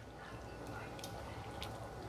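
Faint simmering of thin beef-broth gravy in a pan, with a few light ticks as a wooden spoon stirs it.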